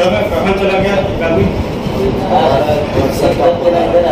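A man speaking indistinctly over a loud, steady background noise.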